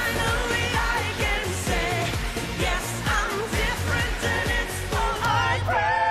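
Pop song performed live on stage: a woman singing a held melody with vibrato over a steady dance beat.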